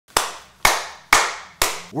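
Four hand claps, evenly spaced about half a second apart, each with a short echoing tail.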